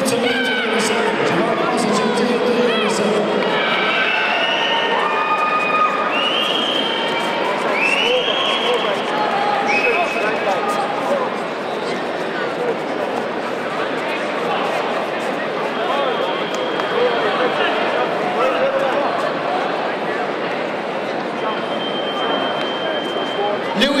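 Busy crowd noise in a large indoor sports hall: many voices talking and shouting at once, with spectators cheering and several short, high shouts in the first half.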